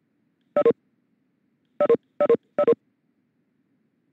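Cisco Webex meeting alert tones: four short two-note beeps, each stepping down in pitch. One comes about half a second in and three follow close together near the middle, the chime that sounds as participants leave the meeting.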